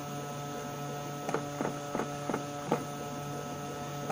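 A 3D-printed faceting machine running under automatic control: a steady electric motor hum with a few faint tones above it, and a series of about six sharp ticks in the second half as its stepper motors move the axes.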